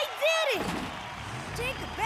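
Animated characters' short wordless vocal sounds: one rising-and-falling voiced sound near the start and higher-pitched exclamations near the end, over a steady background noise.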